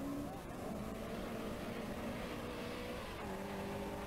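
Rally car engines running at speed as the cars come up the road, a steady engine note that drifts slightly and shifts in pitch about three seconds in.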